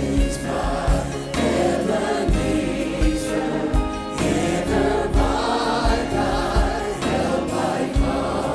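Gospel choir singing with live accompaniment over a steady beat, about one low thump every 0.7 seconds.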